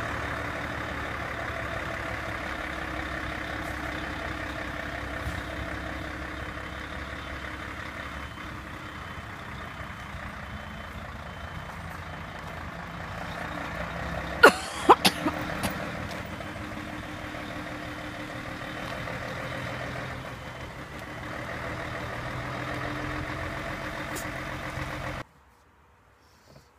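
Truck's diesel engine running steadily, with a faint reversing beeper beeping evenly in the background. A few sharp knocks come in quick succession about halfway through, and the sound cuts off abruptly shortly before the end.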